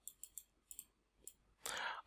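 Faint, scattered light clicks of a stylus tip tapping and lifting on a pen tablet while a word is handwritten, followed near the end by a soft in-breath.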